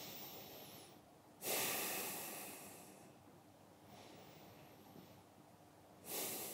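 Slow, deep breathing as part of a relaxation exercise. A soft in-breath is followed by a louder out-breath about a second and a half in, which fades away over a second or so; another quiet breath comes near the end.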